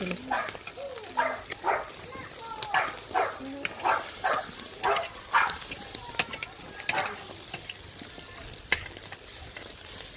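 Pork belly skewers and chicken drumsticks sizzling on a charcoal barbecue grill, with scattered sharp pops and crackles. Faint voices come through in the background.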